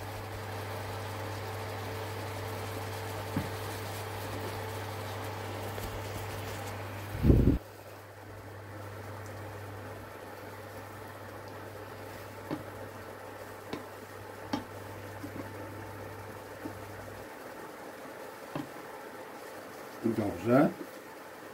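A creamy mascarpone and white-wine sauce with seafood simmering in a frying pan, stirred with a wooden spatula that now and then ticks against the pan, over a steady low hum from the cooktop that stops near the end. One brief louder sound comes about a third of the way in.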